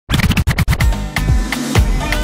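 DJ mix intro: a fast run of choppy scratch stabs over heavy bass hits in the first second, then a music bed with steady tones and a few beats.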